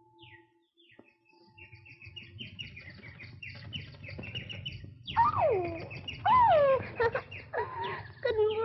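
Cartoon caged bird chirping in short falling peeps, starting faint and quickening to about four a second. From about five seconds in come three loud, sliding, falling calls.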